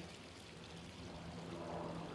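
Quiet, steady rushing background noise with a low steady hum beneath it, the rushing swelling slightly about a second in.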